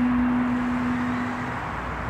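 A single steady, pure held tone that fades out about a second and a half in, over a steady background hiss.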